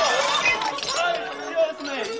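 Violin playing over diners' chatter in a restaurant, with glasses and cutlery clinking.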